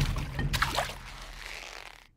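Cartoon water sound effect: splashing as the crocodiles sink under the swamp, a few sharp splashes about half a second in, then a wash that fades away.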